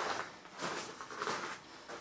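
Soft, uneven rustling and shuffling of someone moving among greenhouse plants, with small swells of noise.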